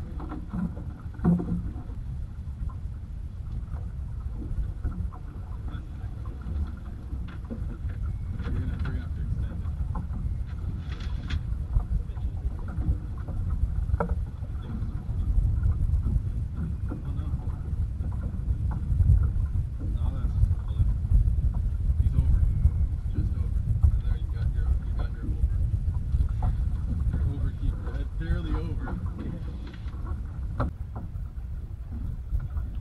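Steady low wind rumble on the microphone with water washing against a boat's hull, louder through the middle, and a few light knocks and clicks from handling gear on deck.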